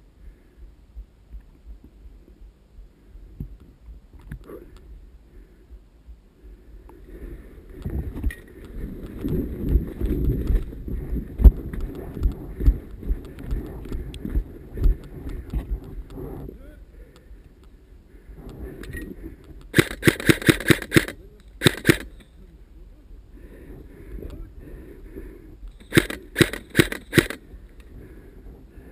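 Airsoft gun fired in rapid full-auto bursts: a burst of about a second roughly two-thirds through, a short one just after, and another near the end. Before them, rustling and low thumps of movement through brush.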